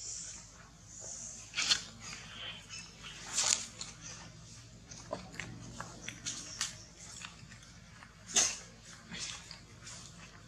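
Dry coconut husk fibres and dead leaves crackling and rustling as a baby monkey handles the husk, in irregular sharp crackles, the loudest about two, three and a half and eight seconds in.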